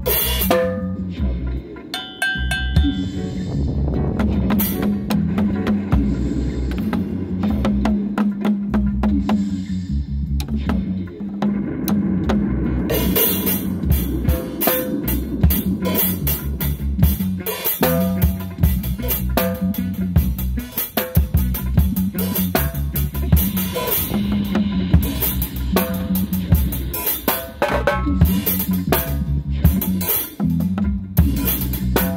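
Live drum kit played in a dub reggae groove: kick, snare rimshots and cymbals over a backing track with a deep, steady bass line. The cymbals thin out briefly near the middle, then come back in busier.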